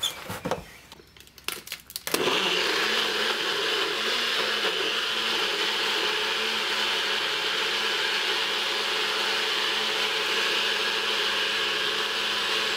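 NutriBullet personal blender blending a protein shake: a few clicks as the cup is seated on the base, then about two seconds in the motor starts and runs steadily.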